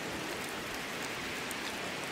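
Steady rain ambience, an even hiss of falling rain with no other events.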